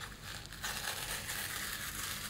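Paper being handled close up, a crackly rustle that sets in about half a second in and carries on steadily.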